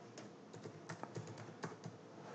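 Faint computer keyboard typing: a quick series of keystrokes as a word is typed.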